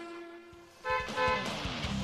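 Cartoon car horn: two short toots about a second in, one right after the other. A strummed guitar music cue starts near the end.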